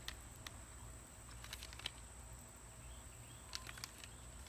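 Faint outdoor ambience: a steady high-pitched insect drone, with a few scattered light clicks and crinkles as a paper pour-over coffee pouch is handled.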